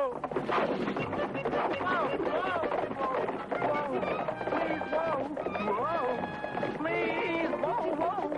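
Several voices shouting and whooping together over a background music score, with held musical notes partway through.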